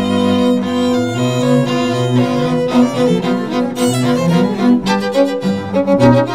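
String quartet of two violins, viola and cello playing: upper notes held while the cello line moves step by step beneath them.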